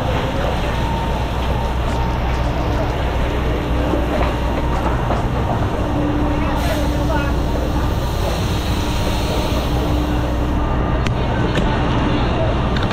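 Fire hose spraying water: a steady, dense hiss that does not let up, over a low, steady engine drone.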